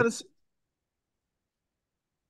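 A man's word ends a quarter of a second in, followed by dead silence, with no room tone at all.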